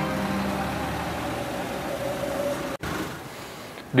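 Motor vehicle engines idling, with road traffic noise. The sound cuts off suddenly a little under three seconds in, leaving a quieter background.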